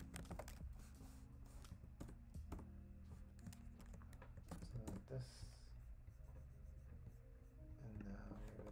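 Faint typing on a computer keyboard: irregular key clicks as a short line of code is typed and run.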